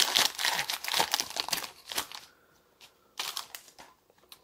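Foil Pokémon TCG booster pack wrapper being torn open and crinkled in the hands for about two seconds, followed by a shorter rustle near the end.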